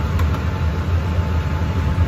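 Steady low mechanical hum, as of a fan or blower motor running. A faint clink of a glass jar being handled comes a moment in.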